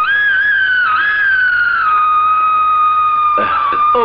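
Background film-score music: a single high, held melodic note that wavers slightly in pitch for the first two seconds, then holds steady.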